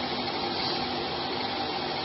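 Steady background noise, an even hiss with a faint hum, in a pause between a man's sentences.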